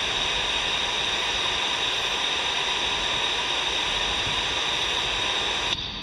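Steady hiss of radio static from a C. Crane CC Skywave SSB 2 portable receiver's speaker on the aviation band, with no voice readable. The hiss cuts off abruptly near the end.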